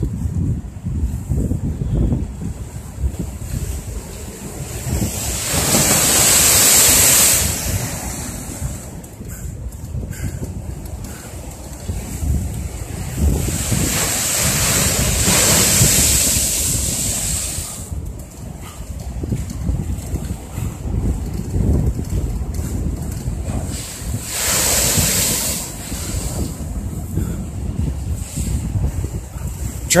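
Choppy lake waves crashing and splashing against a concrete seawall, with three big splashes coming about five, thirteen and twenty-four seconds in, over steady wind buffeting the microphone.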